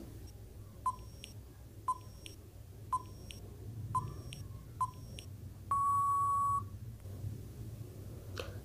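Quiz countdown timer sound effect: five short electronic beeps about a second apart, then one longer beep as the time runs out.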